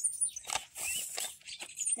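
Bone meal poured from its bag onto compost: a soft, uneven hiss and bag rustle, with a few short high chirps over it.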